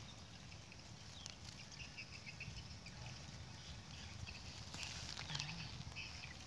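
Faint rustling and handling in dry leaves and grass at ground level, with a faint run of short high chirps between about one and two and a half seconds in.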